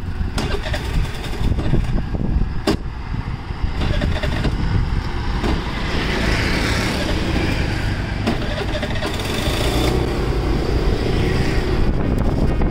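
A motor vehicle on the move: steady low engine and road rumble with wind noise on the microphone, and a few sharp clicks in the first few seconds.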